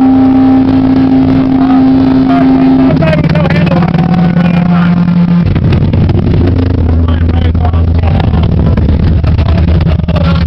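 Live metallic crust band playing loud and distorted: guitar and bass hold long low notes that step down in pitch twice, about three and five and a half seconds in, over drums and crashing cymbals.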